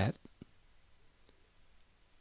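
Computer mouse button clicking: two sharp clicks close together just after the start, with a fainter click about a second later.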